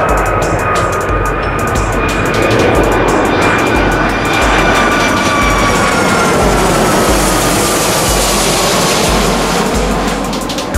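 Jet engines of a landing Boeing 757 passing low overhead: a loud rushing roar with a high whine that slowly falls in pitch as the aircraft goes by. Electronic music with a steady bass beat plays underneath.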